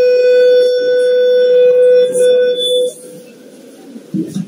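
Public-address microphone feedback: a loud, steady howl held on one pitch that cuts off about three seconds in.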